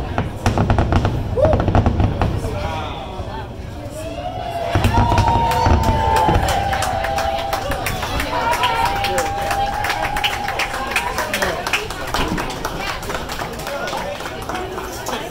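Fireworks going off: deep booms in the first two seconds and again about five seconds in, with dense crackling throughout.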